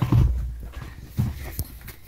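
Handling noise close to the microphone: a low bump and rumble in the first half second, then a few softer knocks and a light click as a pencil and paper worksheet are handled.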